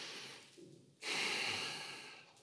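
A man breathing audibly through his nose with his mouth closed, two breaths: a soft one fading out about half a second in, and a louder one starting about a second in.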